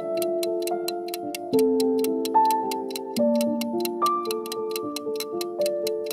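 Clock ticking sound effect, about four even ticks a second, over background music of held notes that change every second or so.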